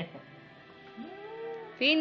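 A baby's voice: a soft rising-and-falling coo about a second in, then a much louder high-pitched squeal near the end.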